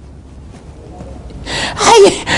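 A man's loud, breathy gasping laugh near the end, after a quiet stretch of low hum.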